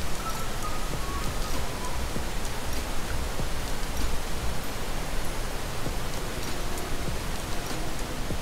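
The Rhine Falls' white water rushing over the rocks: a steady, even rush of falling water.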